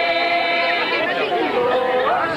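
Voices singing a slow folk dance song together, with long held notes. A little past the middle the melody falls in a glide and settles on a new, lower held note.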